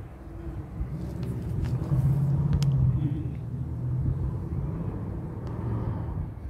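Low rumble of a passing motor vehicle, swelling about two seconds in and fading slowly.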